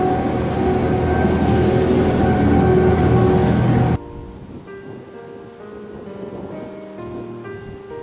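Small hillside monorail car running on its elevated track: a loud, steady rush of noise with a steady whine in it, cutting off suddenly about four seconds in. After that, soft background music with long held notes.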